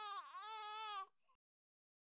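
A single high, drawn-out vocal sound that sags in pitch and comes back up once, then cuts off about a second in.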